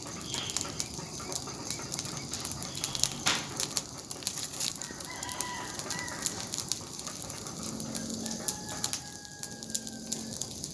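Bonfire of sticks and dry leaves crackling and popping steadily, with one sharp loud pop about three seconds in. A rooster crows faintly around the middle and again near the end.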